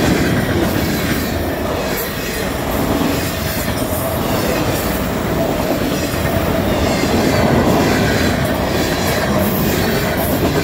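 Freight cars of a mixed freight train rolling past close by: a loud, steady rumble of steel wheels on rail, with wheels clicking over rail joints and a faint wheel squeal.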